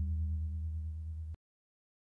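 End of the outro music: a low sustained note dies away, then the sound cuts off abruptly about a second and a half in.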